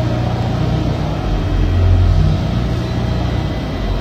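Passenger train moving along the platform: a steady low rumble that swells a little about two seconds in.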